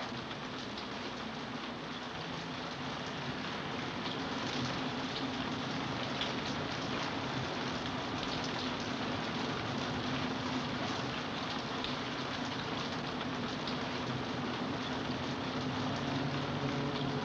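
Steady rain falling, an even hiss that grows slightly louder a few seconds in, with a faint steady low hum beneath it.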